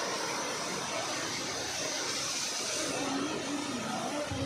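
Steady rushing hiss of water, from a spraying water jet and the river flowing over rocks close by.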